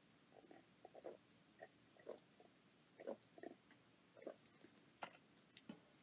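A person sipping and swallowing coffee from a mug: about ten faint, short gulping and mouth sounds spaced irregularly through an otherwise near-silent stretch.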